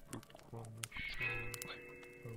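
Layered ritual soundscape of eerie music and voice-like sounds: a low tone pulsing on and off under steady held higher tones, with scattered sharp clicks.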